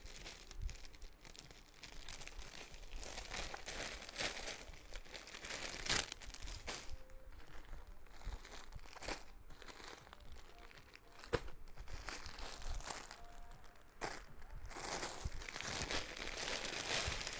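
Plastic bag crinkling and clothing fabric rustling as garments are handled, folded and unpacked by hand: an irregular rustle with a few sharper crackles.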